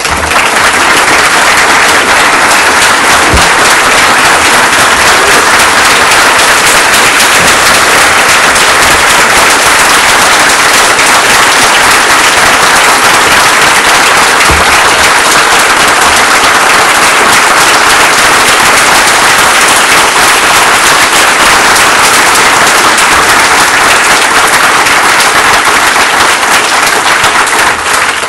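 Large audience applauding: dense, steady clapping that keeps up for nearly half a minute and dies away at the very end.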